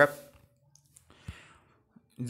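A word of speech trailing off, then a few faint short clicks about a second in.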